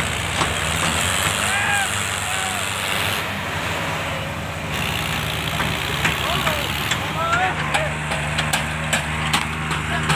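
Diesel engines of a tractor and an excavator running steadily, with people shouting over them. A run of sharp clicks comes in the second half.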